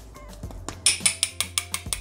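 Small glass jar of potato starch tapped and shaken over a mixing bowl: a quick, even run of light clicks, about seven a second, starting a little under a second in.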